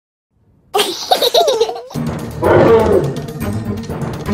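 After a short silence, a small child laughs in a high voice, and upbeat music with a beat comes in about two seconds in, with more laughter over it.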